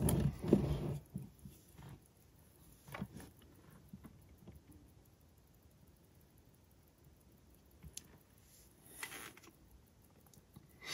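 A few soft knocks in the first second, then near-quiet with a few faint scattered clicks, from a wristwatch being handled on a timegrapher's microphone clamp while its regulator is adjusted.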